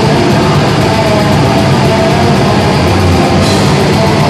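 Black metal band playing live: loud, dense distorted electric guitars, bass and drums in a steady, unbroken wall of sound.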